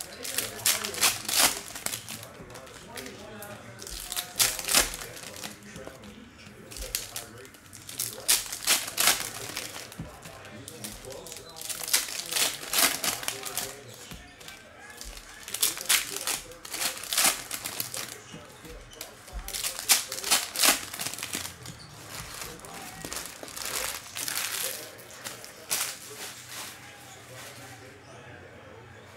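Trading card foil packs and cards being handled: bursts of crinkling and rustling as packs are opened and cards are shuffled and stacked, recurring every few seconds.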